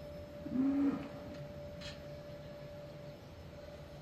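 Quiet barn ambience with one short, low, steady animal call about half a second in, and a faint steady hum.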